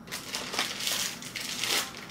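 Clear plastic packaging bag crinkling and rustling in the hands as it is opened and a small item is pulled out of it.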